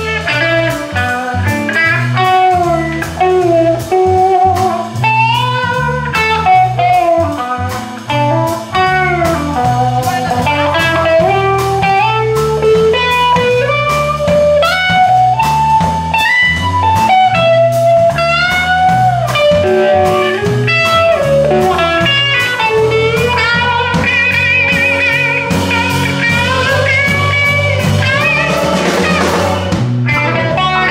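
Slow blues played by a live band, led by an electric guitar solo on a Gibson Explorer over drums, bass and keys. The guitar plays single-note lines with bends, and a wavering vibrato passage about two-thirds of the way through.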